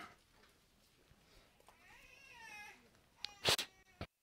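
A faint, high, wavering cry about two seconds in, then a man's sharp cough near the end.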